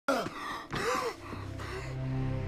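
A man gasping hard, with two strained, voiced breaths in the first second. A low steady hum rises underneath after them.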